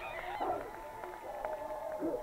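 Young women's voices shouting and cheering in long, high calls as a team celebrates a goal.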